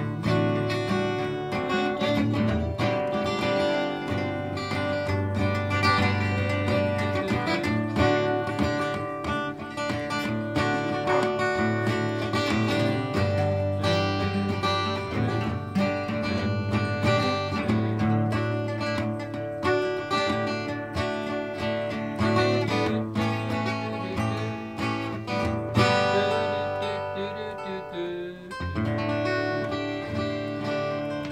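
Two acoustic guitars playing together, with picked notes and strummed chords, continuing without a break apart from a brief drop in loudness near the end.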